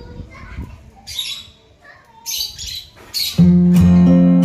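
African lovebirds giving short, harsh squawks, once about a second in and again in a pair just past the two-second mark. Near the end, loud strummed acoustic guitar music cuts in.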